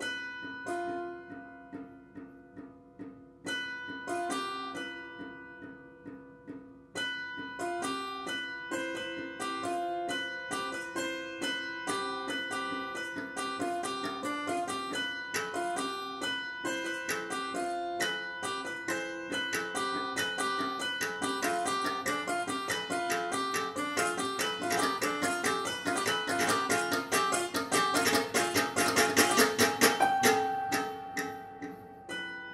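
Grand piano playing the gamelan-style interlocking figuration of a kotekan movement: a few separate ringing notes at first, then quick repeated-note patterns that grow denser and louder, building to a climax near the end.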